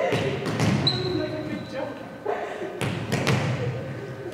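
A volleyball rally in a gym hall: the ball is struck with sharp thumps several times, about five hits over the few seconds, while players' voices call out.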